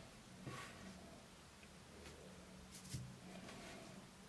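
Faint handling noise of a small metal camera lens being turned in the fingers, with soft rubbing and a light click about three seconds in, over a faint low hum.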